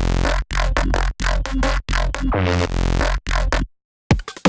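A neurofunk drum & bass drop playing back: heavy, chompy synth bass in chopped stabs with short hard gaps between them and a rising sweep past the middle. It cuts off suddenly just before the end.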